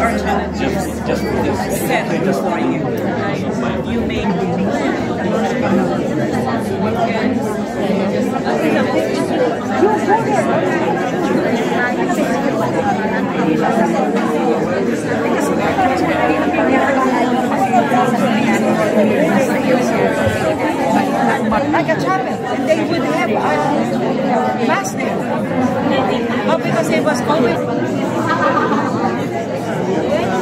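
Many people talking at once in small groups around tables in a large hall: a steady hubbub of overlapping conversations, no single voice standing out.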